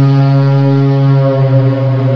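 A loud, deep held drone: one low note with a full stack of overtones, the opening of an ambient intro soundtrack.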